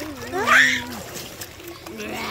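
A short vocal sound sweeping sharply up in pitch about half a second in, over water splashing in a swimming pool.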